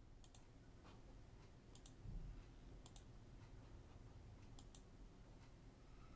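Faint clicks of a computer mouse button, four or five spread across a few seconds, each a quick press-and-release double tick, with a soft low thump about two seconds in over faint room hum.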